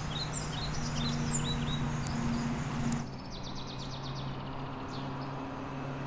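Outdoor ambience of small birds chirping in short repeated calls over a steady low hum. About halfway through the background changes abruptly to a different hum, with a quick rattling trill.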